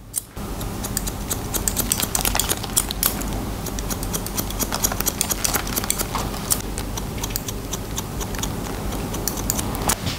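Barber's hair-cutting scissors snipping through damp hair in quick repeated short cuts, with a faint steady hum underneath.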